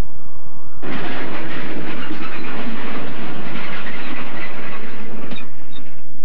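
Strong wind blowing, a loud rushing noise that starts suddenly about a second in and stops shortly before the end.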